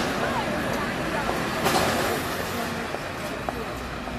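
Noisy street ambience with indistinct voices and traffic-like rumble, with a brief louder burst of noise about 1.7 s in.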